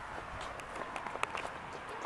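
Light footsteps on brick paving stones: a handful of soft, short steps over a faint outdoor background.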